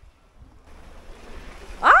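Wind and water noise of a boat moving over choppy sea, with wind on the microphone, which gets louder about a second in. Near the end a person cries out "Ah!" in surprise.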